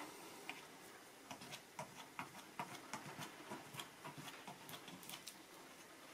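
Faint, irregular soft clicks and taps of a cut piece of plastic credit card being dabbed and dragged through thick acrylic paint on paper.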